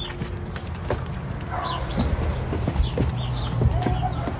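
Small birds chirping in short repeated calls over a steady low rumble, with a few knocks and taps in the second half.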